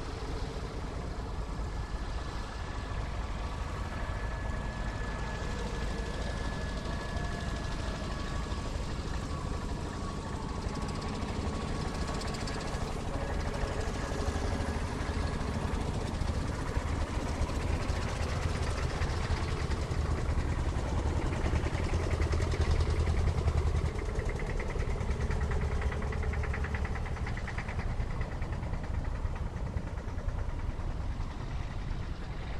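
A procession of vintage tractors driving past one after another, their engines running with a steady low throb. The sound grows louder as the nearest tractors come up, loudest a little past the middle.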